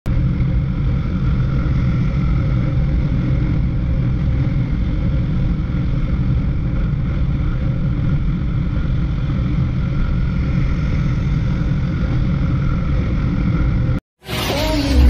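Motorcycle cruising at steady highway speed: its engine drones evenly under heavy wind rumble on the microphone.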